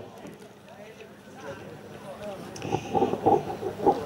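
Faint background voices of people talking, rising a little in the second half, with no clear applause or machine sound.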